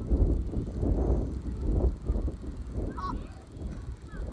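Wind buffeting the phone's microphone, an irregular gusting rumble, with a brief pitched call about three seconds in.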